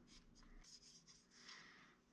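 Near silence, with a few faint, brief scratching and rubbing sounds of hands working modelling clay.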